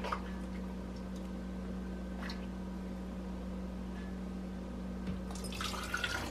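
Faint liquid sounds of a ladle scooping mushroom broth in a stainless steel pot, over a steady low hum, with a louder spell of liquid sound near the end as broth goes into the strainer.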